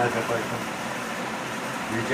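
Steady background noise, an even whir like a fan or air conditioner running.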